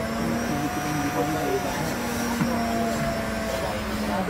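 Coffee vending machine running with a steady mechanical hum as it dispenses coffee into a paper cup.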